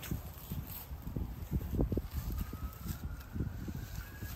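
Scuffling in grass: irregular soft thumps and rustles as a green iguana is snared with a noose pole and pulled up off the bank.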